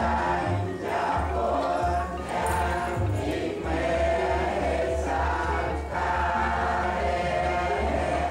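Buddhist chanting by many voices together in unison, in phrases about a second long, over a low steady hum.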